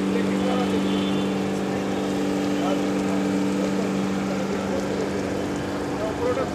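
Fire tender's engine-driven pump running with a steady, even hum, feeding a hose that sprays water on a burnt-out vehicle, with voices in the background.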